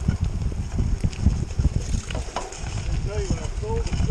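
Canyon Grail gravel bike rolling over a rough dirt trail, heard from a handlebar-mounted camera as a dense, uneven low rumble with jolts and rattles, plus wind on the microphone. A voice speaks faintly over it in the second half.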